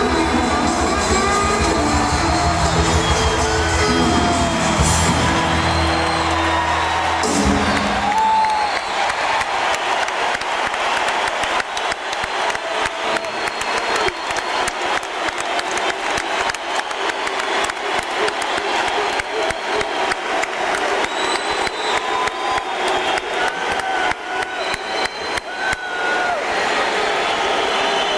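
A live rock band's song ends on a held chord that cuts off about a third of the way in. A large arena crowd then cheers, whoops and applauds.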